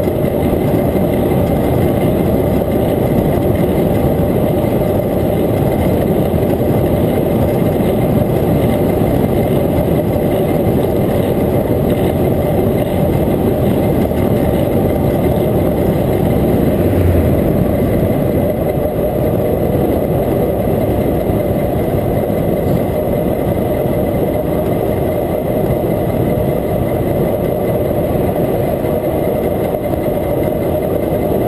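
Steady wind buffeting on the microphone of a bike-mounted camera while an electric bike rides along at speed, mixed with tyre noise on asphalt.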